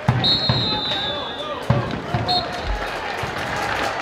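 Football stadium sound with a referee's whistle: one long blast starting just after the beginning, then a short blast a little after two seconds. A few irregular low thuds and crowd noise run underneath.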